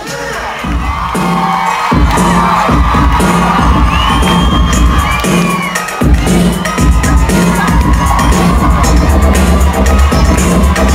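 Live concert from within the crowd: the audience cheers and screams while a heavy, pulsing bass beat comes in over the PA about two seconds in, dropping out briefly around six seconds before carrying on.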